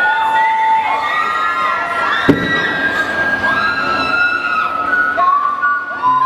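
Audience screaming and cheering, many high-pitched voices overlapping and rising and falling, with one sharp knock about two seconds in.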